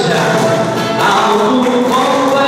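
Congregation singing a hymn with instrumental accompaniment, steady and loud, in a reverberant church hall.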